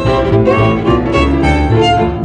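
Violin playing a melody, with a lower accompaniment pulsing steadily underneath.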